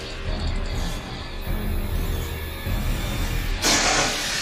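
Animated-show soundtrack: background music with low sustained tones, then a loud electric zap sound effect bursting in near the end.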